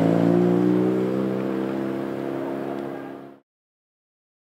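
Mazda RX-7 rally car's turbocharged rotary engine, pulling away at a steady pitch and getting quieter as the car moves off. The sound cuts off abruptly near the end.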